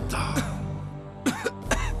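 A man coughing and choking, with harsh coughs in the second half, over background music: he is choking on bread stuck in his throat.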